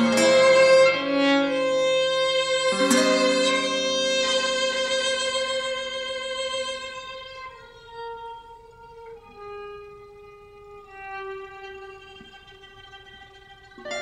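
Violin and classical guitar duo playing contemporary chamber music: struck guitar chords at the start and about three seconds in under a sustained violin note, then the music thins out to quieter, long held violin notes that shift pitch a few times.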